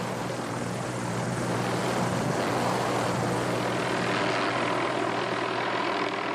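Helicopter flying, its rotor and engine making a steady drone.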